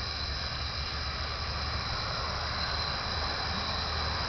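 Steady rumble and hiss of distant road traffic, with a faint steady high tone above it.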